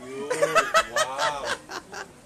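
A person laughing in a quick run of short bursts.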